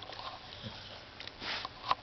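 Pit bull dog sniffing through his nose as he settles his head into the cushion, a short sniff about one and a half seconds in.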